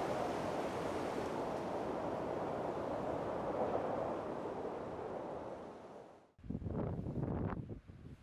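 Steady rush of wind and sea surf, fading out about six seconds in. After a brief gap, gusts of wind buffet the microphone.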